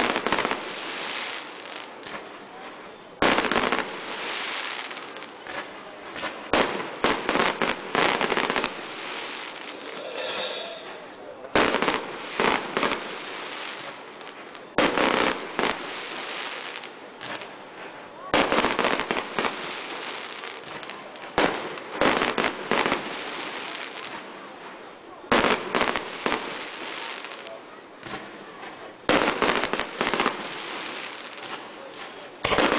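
Aerial firework shells bursting overhead: a sharp bang every few seconds, some in quick pairs, each followed by a second or so of crackling.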